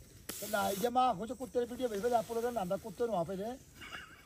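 A wavering voice lasting about three seconds, broken into short pulses, just after a brief hiss.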